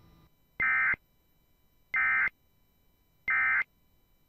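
Emergency Alert System end-of-message signal: three short bursts of warbling SAME digital data tones, about a third of a second each and evenly spaced about a second and a third apart, marking the end of the alert.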